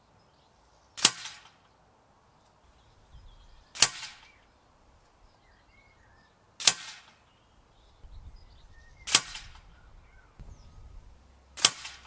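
Five shots from a Huntsman FAC air rifle, each a sharp crack with a short tail, spaced about two and a half seconds apart.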